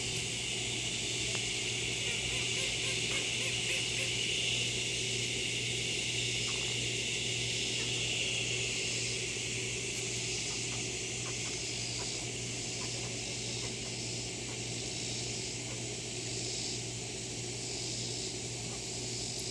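A steady high-pitched hiss and a low hum, with a few faint, brief sounds from a flock of Muscovy ducks.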